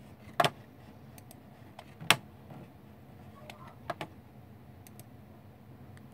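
A few sharp computer-mouse clicks, the loudest about half a second and two seconds in, with fainter ones near four seconds, over a faint steady low hum. The clicks try to play a Windows test sound, but nothing comes from the speakers: the computer's sound is not working.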